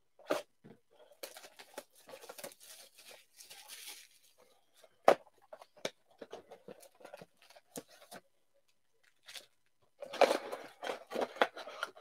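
A sealed box of Panini Phoenix football card packs being opened by hand: crinkling and tearing of the packaging for a few seconds, a single sharp knock about five seconds in as the box is set down, scattered ticks, and denser rustling of the wrapped packs being pulled out and stacked near the end.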